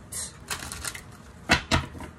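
Tarot cards being handled: a brief papery rustle, then a few light taps and two sharp clicks close together about one and a half seconds in.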